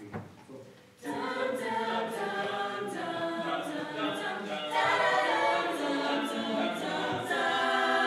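Show choir singing held chords in close harmony, many voices coming in together about a second in after a moment of quiet and swelling a little louder about halfway through.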